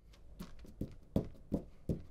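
Hands pressing and patting a sheet of sandpaper down onto a glue-sprayed glass sharpening plate: a regular run of soft knocks, about three a second, over low handling rumble.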